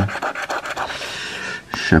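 Latex coating being scraped off a paper scratch card, a dry rasping scrape in quick uneven strokes, with a sharp click near the end.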